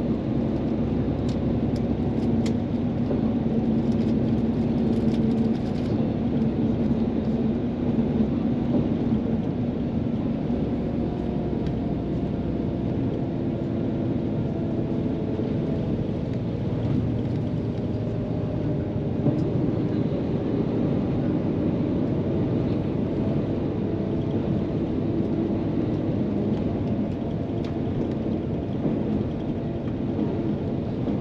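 Steady rumble of a coach cruising at speed, heard from inside the cabin: engine hum and road noise, with a low engine drone that eases off about six seconds in.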